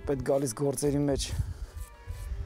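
A man's voice speaking in a run of short phrases, the pitch bending up and down, falling quieter in the last half second.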